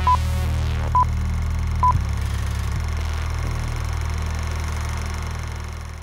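Electronic intro sting with a film-leader countdown: three short high beeps, one a second, over a steady low drone. A falling whoosh sweeps across the first beep.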